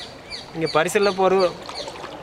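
A man singing a short phrase with held notes, about half a second in until past halfway, with short high bird chirps in the quieter moment near the start.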